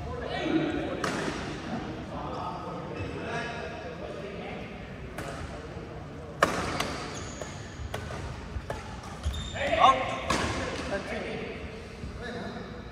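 Badminton rackets striking a shuttlecock in a rally, a handful of sharp, irregularly spaced hits echoing in a large indoor hall.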